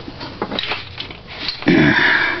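Faint clicks of handling in a quiet small room, then near the end a loud, short sniff through the nose.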